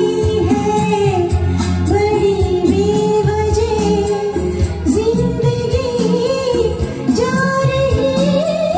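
A woman singing a Hindi film duet in a melodic line over a recorded karaoke-style backing track.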